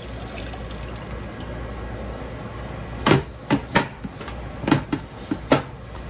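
Pot roast juice poured from a pot through a fine-mesh strainer into a saucepan: a steady pouring splash for about three seconds, then a handful of sharp knocks and clinks.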